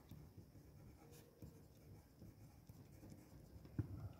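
Faint scratching of a pencil lettering words onto a drawing sheet, with a single light tap near the end.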